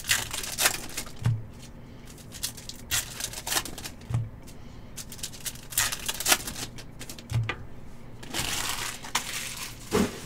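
Foil wrapper of a Bowman's Best baseball card pack crinkling and tearing as hands open it, in several crackly bursts, the longest near the end. A soft low thud comes every few seconds underneath.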